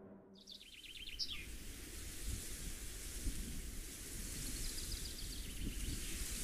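Faint outdoor nature ambience: a steady hiss with a low rumble. A short, rapid trill of high bird chirps comes about half a second in, and fainter chirping follows later.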